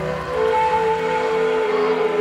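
Background music with long held notes, the strongest rising in about a third of a second in.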